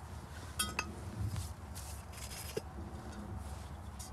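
A glass wine bottle being handled: one bright, ringing clink a little over half a second in, then soft rustling handling noise.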